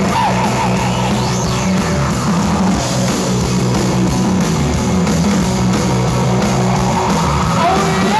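Live rock band playing loudly on electric guitars, drum kit and keyboard, with sliding lead notes near the start and again near the end.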